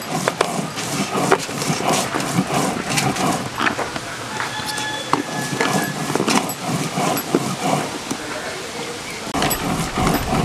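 Hands working spice into raw fish pieces on a woven tray, with voices in the background. Near the end, a stone roller grinding on a stone slab (shil-pata) makes a deeper rumbling.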